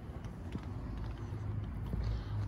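A steady low hum with a few faint scuffs of footsteps on pavement.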